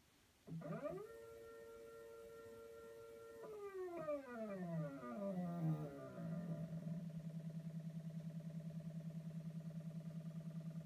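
AutoTrickler V2 powder trickler motor starting about half a second in with a quick rising whine, then holding a steady high whine at full speed. It glides down in pitch for about three seconds as it ramps down near the 44-grain target, and settles into a low hum that pulses about ten times a second at its slowest speed, trickling the last fraction of a grain.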